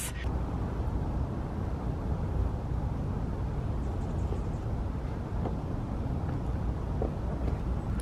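Steady low rumble of outdoor background noise, with a couple of faint light knocks about five and seven seconds in.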